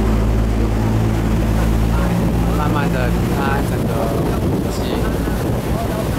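A boat's engine running steadily with a low hum under the rush of its churning wake and wind on the microphone. The engine hum is plainest in the first two seconds, then sinks under the water and wind noise.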